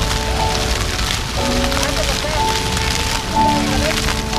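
Ground-level fountain jets spraying and splashing onto paving, a steady hiss like rain. Music with long held melodic notes plays over it.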